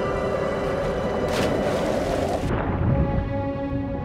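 Eerie sustained film score with a figure plunging into water: a brief rush of splash noise about a second and a half in. About a second later the high end cuts off suddenly and the sound goes muffled and low as it goes underwater.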